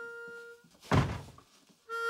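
Harmonica holding a mournful chord that stops, then a single heavy thunk about a second in, followed by a moment of quiet before the harmonica starts again near the end.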